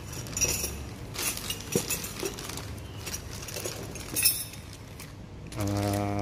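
Plastic packaging rustling and crinkling in several bursts as a hand rummages in a cardboard box, with light metallic clinks as a stainless steel espresso filter basket is taken out.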